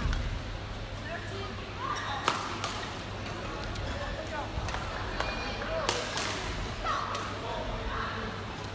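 Sharp, scattered hits of badminton rackets on shuttlecocks in a sports hall, several clacks a fraction of a second to a couple of seconds apart, over a steady hall hum and faint background voices.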